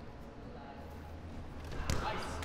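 Low steady hum of a large room with faint distant voices, then a single sharp knock near the end.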